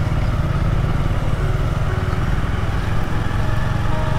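Bajaj Avenger 220's single-cylinder engine running steadily at low speed, heard from the rider's seat as the motorcycle rolls along.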